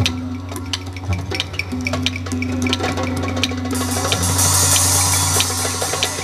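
Several didgeridoos droning together on one low, steady note, with hand drums striking a steady rhythm over them. A high hiss joins about four seconds in.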